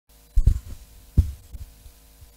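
Handheld microphone being picked up: low handling thumps, two close together, another about a second in and a softer one after, over a steady electrical hum.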